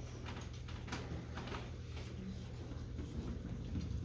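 Quiet pause with scattered soft knocks and rustles of people moving and handling things, over a low steady hum.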